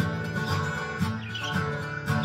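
Acoustic guitar strummed in a steady rhythm, chords struck about twice a second.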